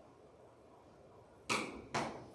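Quiet room tone, then two short, sharp sounds about half a second apart near the end.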